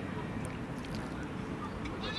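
Open-air ambience of a football pitch: a steady low rumble with faint distant voices and a couple of light ticks.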